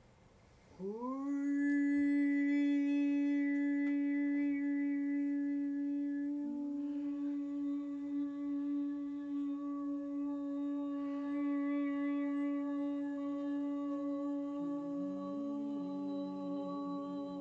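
Human voices humming a long, steady drone. One voice slides up into a held note about a second in, a second voice joins at a nearby pitch about halfway through, and a wavering voice comes in near the end.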